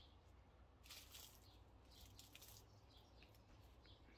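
Near silence, with a few faint, brief high-pitched ticks.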